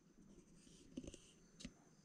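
Near silence: room tone with a few faint taps.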